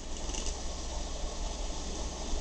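Steel Hunt School dip pen nib scratching across paper while inking lines, a soft irregular scratch over a low steady hum.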